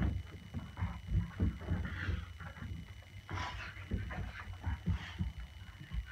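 A dog's paws thudding and scuffling on a rug over a wooden floor as it jumps and lunges after a lure swung on a stick, a run of irregular low thumps.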